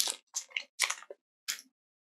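Foil Pokémon booster pack wrapper crinkling in the hands, about four short crinkles in the first second and a half.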